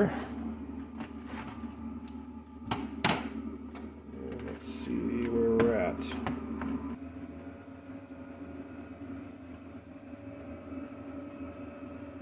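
A digital multimeter and its test leads being handled and set on a power supply's screw terminals: a few sharp plastic clicks and knocks, over a steady low hum.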